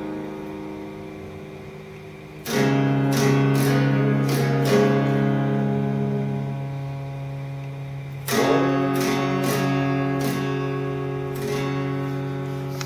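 Acoustic guitar played fingerstyle: a chord fades out, then a chord is struck about two and a half seconds in and another near eight seconds in, each let ring with a few picked notes over it, the closing chords of the piece.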